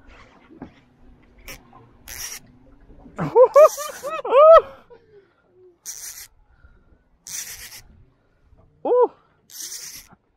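A man laughing for about a second and a half, three seconds in, while fighting a fish on a heavily bent rod. Around it come about five short, high, hissing bursts of the fishing reel's drag giving line as the hooked fish pulls, and a brief voiced call near the end.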